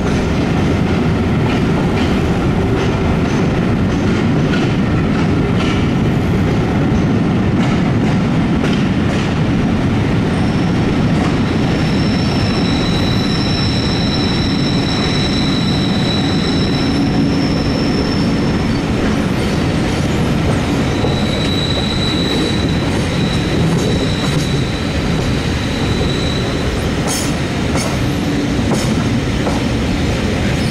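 A passenger train's coaches rolling over the rails, heard loud and close. Wheels clatter over joints and pointwork. A high-pitched squeal comes in about ten seconds in and again near the end as the train curves and slows, and a run of sharp clicks follows just before the end.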